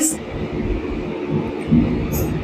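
Steady low rumbling background noise in an unprocessed voice recording, the kind of noise that noise reduction is meant to remove.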